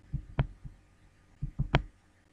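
Computer keyboard and mouse clicking: a few dull clicks in the first second, then a quick run of three clicks about a second and a half in.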